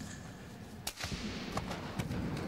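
A dancer's bare hands and body slapping a concrete floor. A sharp, loud slap comes about a second in and a lighter one follows shortly after, the first trailing an echo off bare concrete walls.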